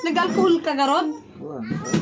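A cat meowing: a couple of rising-and-falling calls in the first second, with people talking.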